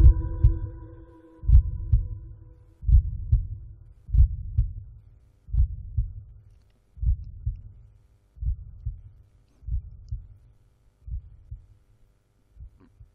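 Recorded heartbeat sound effect: low double lub-dub thumps repeating about every one and a half seconds, slowly getting fainter. A held musical tone dies away during the first two seconds.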